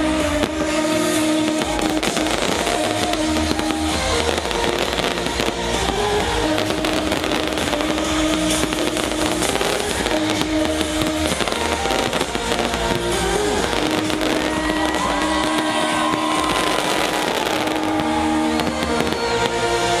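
Electronic dance music playing loud over a festival sound system, with fireworks crackling and banging throughout.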